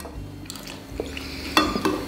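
Forks and spoons clinking and scraping against ceramic bowls as people eat, a few light clicks with a louder cluster of ringing clinks near the end.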